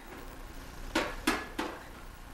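Plastic sippy cup knocking three times on the lid of a metal tin, about a third of a second apart.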